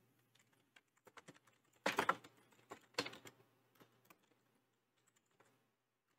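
Typing on a computer keyboard: an irregular run of key clicks, the loudest strokes about two and three seconds in, tapering off near the end.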